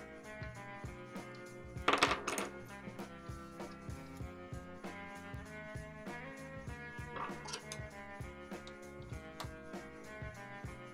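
Background music with a steady beat, likely guitar-based, underneath the whole stretch. About two seconds in there is a short, loud metallic clink with a brief ring, and a fainter one near seven seconds, from handling a metal gap gauge and tools against the printer frame.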